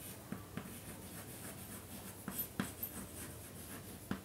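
Chalk writing on a blackboard: irregular short scratchy strokes with sharp taps as the chalk meets the board.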